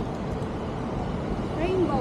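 Steady low rumble of outdoor background noise, with a person's voice starting near the end.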